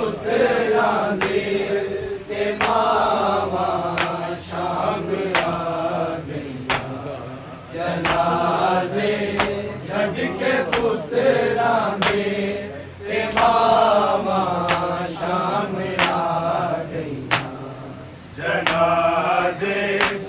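A group of men chanting a Punjabi noha (Shia lament) in unison, unaccompanied. A sharp slap keeps the beat about every one and a third seconds.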